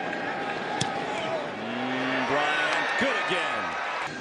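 Football stadium crowd noise with many voices shouting and cheering, and one sharp thump a little under a second in, the boot of a field goal kick. The shouting swells in the middle seconds as the kick is good.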